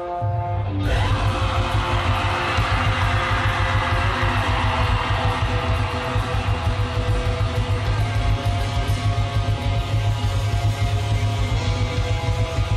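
Live black metal band: a held, sustained chord gives way about a second in to the full band crashing in with distorted electric guitars, bass and rapid drumming, which then carry on loudly.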